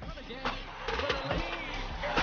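Basketball broadcast sound of an arena crowd and a commentator's voice, mixed under background music, with a few sharp knocks.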